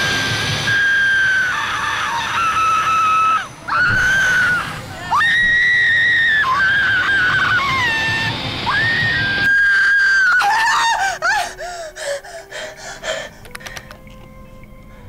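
Riders on a drop-tower amusement ride screaming: long, high-pitched screams one after another over a rushing noise. Near the end the screams break into shorter, falling cries and fade away.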